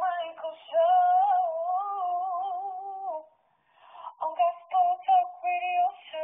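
A woman singing with vibrato: a long held note, a brief pause about three seconds in, then shorter notes.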